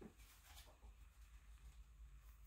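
Near silence, with a faint rustle of a paperback picture book's pages being handled and turned during the first second.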